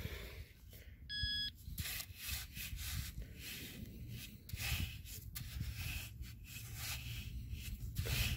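A handheld metal-detecting pinpointer gives one short electronic beep about a second in. Irregular rubbing and scuffing noise runs around it.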